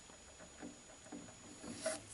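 Mostly quiet, with a few faint soft handling sounds from a hand working the equipment, the loudest just before the end, over a faint steady high-pitched whine.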